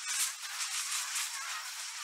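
Sparkler-style fizzing sound effect: a steady crackling hiss made of many fine crackles.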